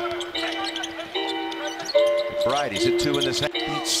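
A basketball bouncing on a hardwood court during live play, under background music with long held notes.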